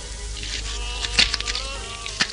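Animated-film soundtrack: thin, wavering high tones with an insect-like buzz, broken by a cluster of sharp clicks a little past the middle.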